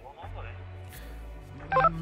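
Low sustained background music with faint speech over it, and a short electronic beep of several steady tones near the end.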